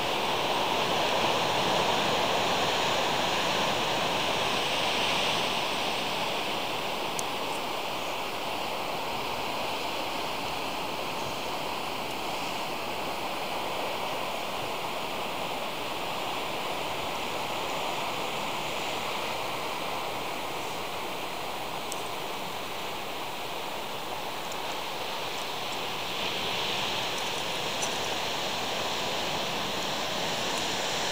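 Ocean surf breaking on the rocks at the foot of a high sea cliff, heard from the clifftop as a steady rushing noise. It is a little louder in the first few seconds and swells again near the end.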